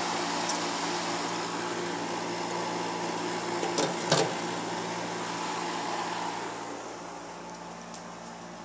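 Dehumidifier running: a steady hum with an airy fan rush, getting quieter over the last couple of seconds. Two short knocks come just before halfway.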